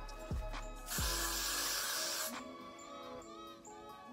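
One burst of got2b Freeze aerosol hairspray, hissing for just over a second starting about a second in, over background music.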